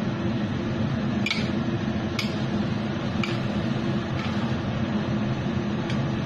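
Metal spatula scraping and tossing stir-fry in a steel wok: four short strokes about a second apart, over a steady low hum.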